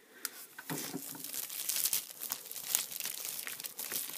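Packaging crinkling and rustling as hands rummage through a mail package, a dense run of small crackles.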